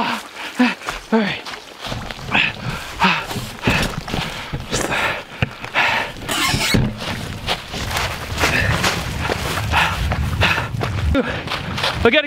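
A man gasping and panting hard from cold shock after wading out of an icy pond, a few short pitched cries near the start, then quick rough breaths. Footsteps crunch through dry leaves, over a low rumble of wind and handling on the microphone.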